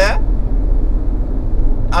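Steady low rumble of a car's road and engine noise heard from inside the cabin while driving through a tunnel, with a man's voice briefly at the start and the end.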